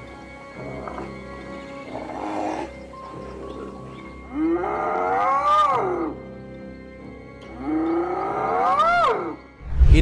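Spotted hyena crying out: two long cries, each rising then falling in pitch, about four and eight seconds in, after shorter calls early on. A steady music drone runs underneath.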